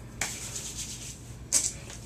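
Oiled hands rubbing through damp hair: a soft rubbing with two brief, louder swishes, one just after the start and one about a second and a half in.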